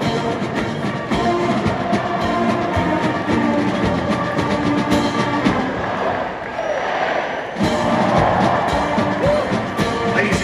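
A large military marching band of brass and drums playing a march, with sustained horn chords over a steady drumbeat. The sound thins briefly about two-thirds of the way through, then the full band comes back in.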